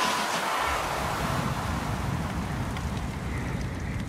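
A dramatic animated sound effect of a steam locomotive's fire surging: a steady rushing noise, joined by a deep rumble about half a second in.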